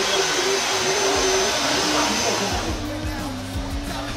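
A hair dryer blowing steadily, stopping abruptly about two and a half seconds in, under light background music.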